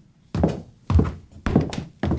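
Footsteps coming down a staircase: a heavy step about every half second, four steps in all.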